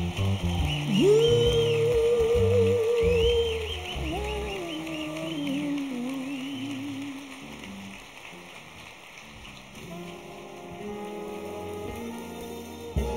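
Live band and orchestra music: a long held melodic note with vibrato over bass and chords, then a lower phrase that dies away. Soft sustained chords begin about ten seconds in.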